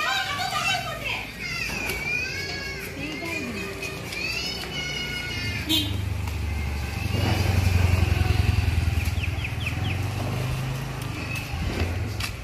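Children's high voices chattering, then a motorcycle engine running close by for several seconds, loudest in the middle. A single sharp click comes just before the engine is heard.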